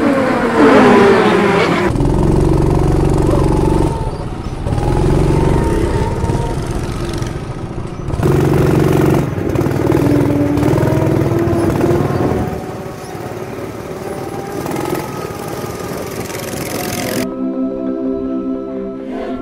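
Small go-kart engines running, with karts passing close at first. Then one kart's engine is heard from the driver's seat, its pitch rising and falling as the throttle opens and eases. Music starts near the end.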